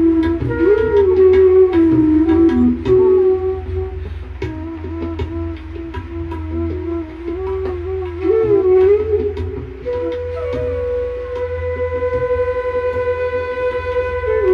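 Bansuri (Indian bamboo transverse flute) playing a slow melody of Raag Brindavani Sarang with gliding ornaments between notes. It settles on one long held higher note for the last few seconds.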